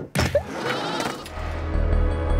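Film soundtrack across a cut between clips: a brief dip, a short bleat-like cry about a third of a second in, then a low, steady ambient music drone that sets in about a second and a half in.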